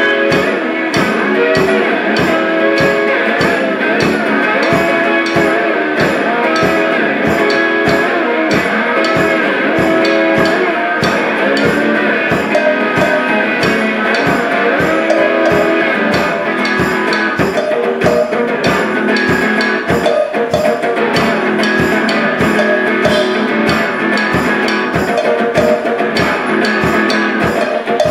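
Live band playing a rock song: guitars over a steady drum beat.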